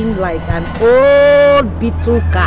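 A woman's voice: a few short syllables, then one long, high-pitched drawn-out cry lasting almost a second, the loudest sound here, over a steady low hum.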